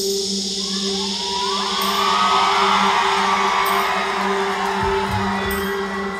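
Live band music in a concert hall: a steady low note and its octave held throughout, with faint high ticks about every two seconds. Audience whooping and cheering rises over it from about a second in.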